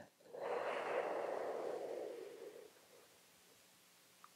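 A long inhale sipped in through the mouth in sitali (cooling) breath: a breathy hiss lasting about two and a half seconds that fades out.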